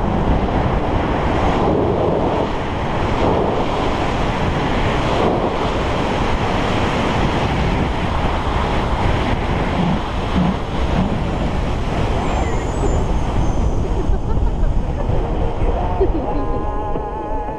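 Wind rushing over a handheld action camera's microphone in tandem paraglider flight: a loud, steady, even rush of noise with no clear tones.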